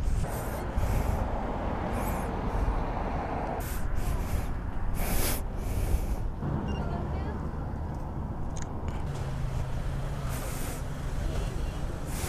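City street background: traffic on the road alongside, with a vehicle's engine hum for a few seconds past the middle, and faint voices of people nearby.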